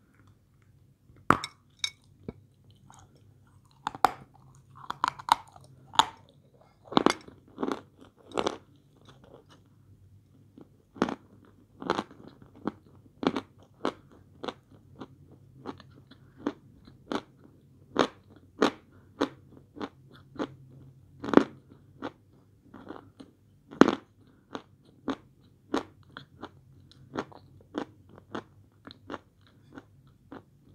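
Bites and chewing crunches of a block of edible chalk, sharp separate crunches coming roughly once a second throughout.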